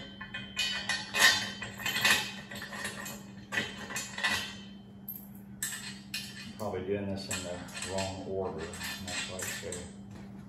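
Steel parts of a log skidding arch frame clanking and rattling in a string of sharp metal knocks as the top brace is fitted and bolted on, over a steady low hum. In the second half the clanks give way to a wavering voice-like sound.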